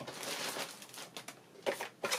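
Quiet handling noise as craft equipment is moved by hand: a rustling slide for about the first second, then a few light clicks and knocks.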